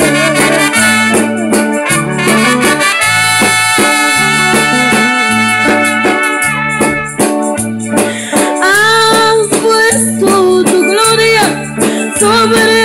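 Live band music with a repeating bass line, hand percussion and a brass-sounding lead melody, with a long held note in the middle.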